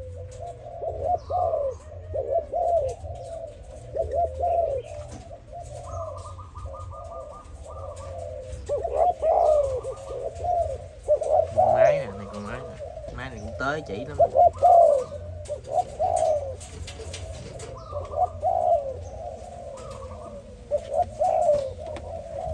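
Spotted doves of a Malaysian cooing strain, several birds cooing over one another in short, low, repeated phrases.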